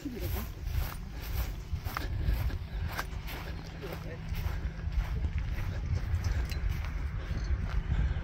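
Wind rumbling on the microphone outdoors, with scattered light clicks.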